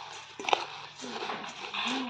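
A metal spoon stirring puffed rice and chanachur in a stainless steel bowl. It makes a steady dry rustle of the grains, with sharp clinks of the spoon against the steel, the loudest about half a second in.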